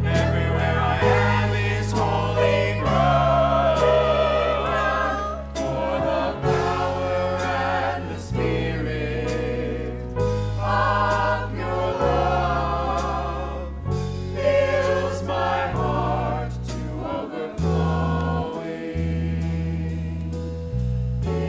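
Mixed choir of men and women singing a song together, backed by a band with a low bass line that changes note every second or two and light drum strokes.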